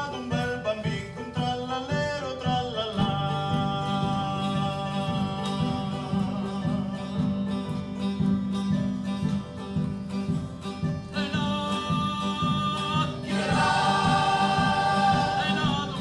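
Male folk choir singing long-held chords in harmony, accompanied by acoustic guitars, a mandolin and a keyboard; the singing grows louder and fuller near the end.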